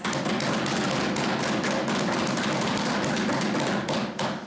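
Many members pounding on their wooden desks in applause, a dense, steady patter of thumps that stops near the end.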